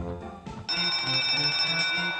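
Online slot game sounds: organ-style game music with a couple of short knocks from the reels stopping, then about 0.7 s in a loud, steady bell-like chime rings out over the music, the signal that the bonus feature has been triggered.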